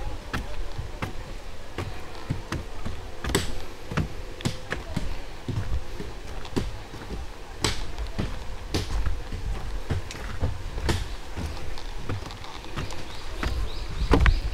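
Footsteps on wooden boardwalk stairs: even, hollow knocks at about two steps a second, over a low rumble.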